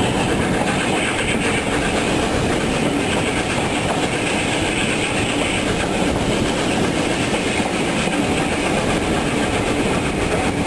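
Train running steadily along the track, a continuous noise of wheels on rail with no change in level.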